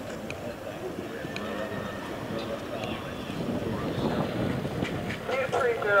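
Horse cantering on sand footing, its hoofbeats muffled in a steady rumble of open-air background noise. A voice starts near the end.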